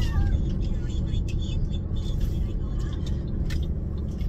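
Car cabin noise while driving: a steady low rumble of engine and tyres on the road, with a few faint clicks.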